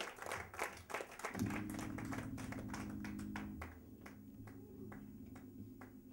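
Audience applause dying down to scattered single claps after a song. About a second and a half in, a steady low drone from the band's amplifiers comes in and holds.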